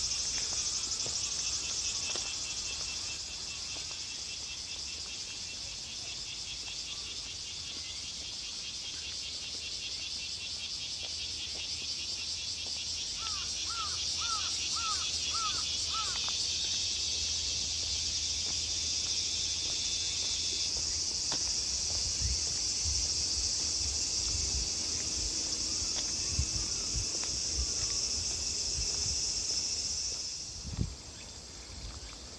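A steady, high-pitched chorus of insects trilling in the trees, with one layer of it dropping out about two-thirds of the way through. A short run of about six quick repeated notes cuts in near the middle, and soft footfalls thud on the paved path towards the end.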